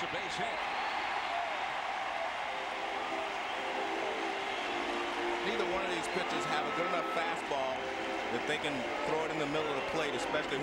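Baseball crowd cheering and clapping for a base hit: a steady, dense wash of many voices and hands with no break.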